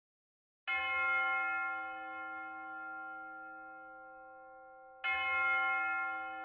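A bell struck twice, about four seconds apart, each stroke ringing out with many overtones and slowly fading.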